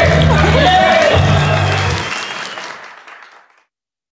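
A crowd of wedding guests applauding and cheering over music with a heavy bass beat. The bass cuts off about two seconds in, and the applause and voices fade out to silence over the next second and a half.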